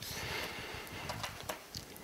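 Faint clicks and scraping of a tiny P0 Phillips screwdriver turning a small screw in the metal memory cover on the underside of a MacBook Pro, a few light ticks over a quiet hiss.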